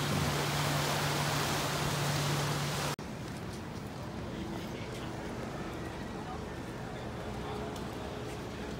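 Wind blowing on the microphone with surf at the seawall, over a steady low hum, cutting off abruptly about three seconds in. Then quieter street ambience with light footsteps on pavement.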